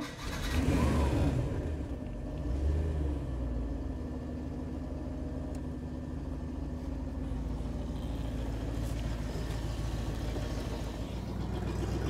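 Boat's sterndrive engine catching and revving up, swelling once more, then settling into a steady idle. It is running on antifreeze drawn from a feed bucket through the water intake during winterization.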